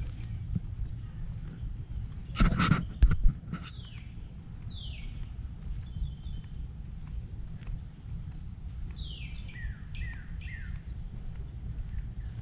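Birds calling with quick downward-sliding whistles, one or two about four seconds in and a run of several near the end, over a steady low rumble. A couple of loud short bursts of noise come about two and a half to three seconds in.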